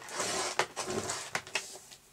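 Patterned paper being handled: a sheet rustling and sliding for about a second, followed by a few light clicks.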